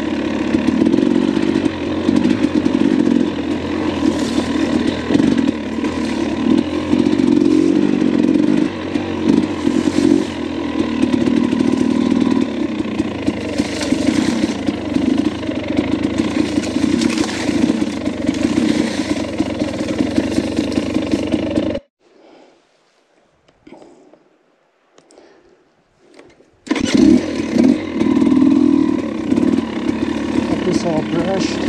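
Dirt bike engine running while riding single-track trail, its loudness rising and falling unevenly. About 22 seconds in it cuts off abruptly to near silence for about five seconds, then comes back just as suddenly.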